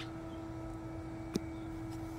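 Steady low hum with a single held tone, and one light click a little past halfway.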